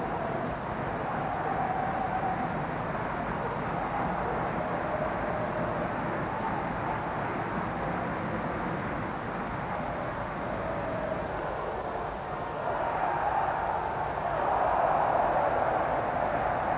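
Stadium crowd noise from an old football match broadcast, a steady hubbub that swells louder over the last few seconds as play moves toward goal.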